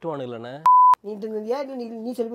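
Censor bleep: a single steady high beep of about a third of a second, cutting a word out of a man's speech.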